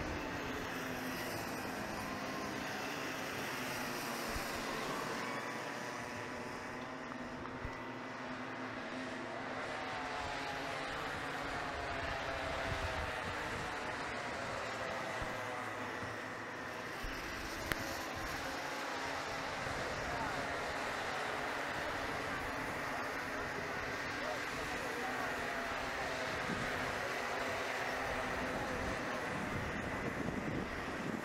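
Several small two-stroke kart engines buzzing around the track, their pitches overlapping and rising and falling as the karts accelerate and lift through the corners.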